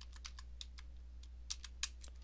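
Typing on a computer keyboard: a quick, irregular run of key clicks, with two louder keystrokes near the end.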